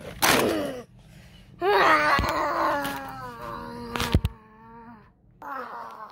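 A child's voiced dinosaur roar, made with the mouth during toy play: a short harsh burst, then a long cry that falls in pitch, and a shorter one near the end. A few sharp plastic knocks from the toys come about four seconds in.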